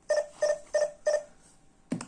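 Digoo HAMB PG-107 alarm hub beeping four times, about three beeps a second, then pausing: its warning countdown after the armed system's motion detector was triggered, asking to be disarmed before the siren sounds.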